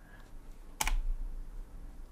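A single keystroke on a computer keyboard: one sharp click a little under a second in, deleting one character of text.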